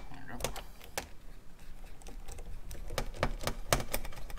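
Small metal parts of a hand-crank wax extruder clicking and tapping as the die disc and end cap are handled and fitted onto the barrel: irregular light clicks, more frequent in the second half.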